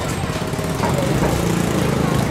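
A small engine running steadily, its low pulsing a little louder in the second half.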